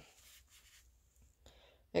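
Faint rustling as a cake of yarn and its paper label are handled and turned over, lasting about a second, then near quiet with a faint tick.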